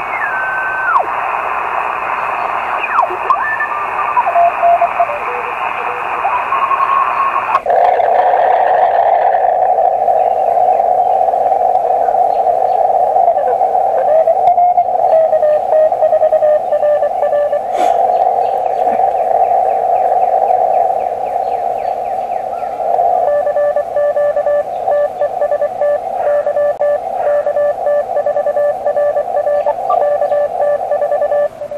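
Elecraft KX2 transceiver receiving on its speaker: band hiss with whistling tones sliding past as the dial is tuned. About seven and a half seconds in the hiss abruptly narrows to a thin band as a narrower receive filter is selected. Keyed Morse code (CW) beeps come through it, plainly in the last third.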